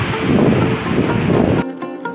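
Wind rumbling on the microphone over outdoor noise, with background music under it. About one and a half seconds in, the rumble cuts off suddenly, leaving the music alone.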